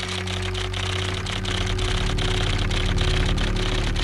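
A loud hiss crowded with rapid, irregular clicks, laid over music that carries on beneath it; it starts and stops abruptly.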